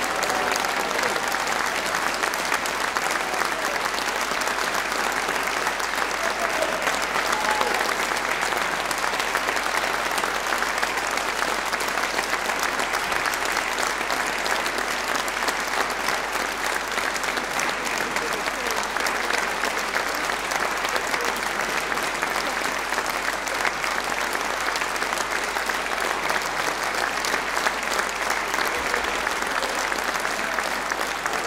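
Concert audience applauding steadily at the end of a live performance, a dense, even clatter of many hands clapping with a few voices mixed in.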